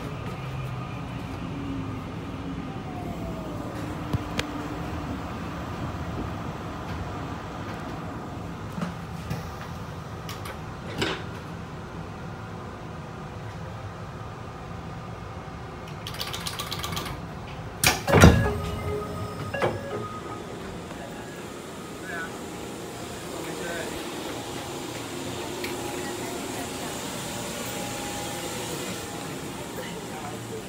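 Inside a Puyuma Express tilting train (TEMU2000) as it comes into a station: steady running and ventilation noise. About sixteen seconds in there is a short hiss of air, then a loud clunk as the passenger door opens, with a smaller click just after.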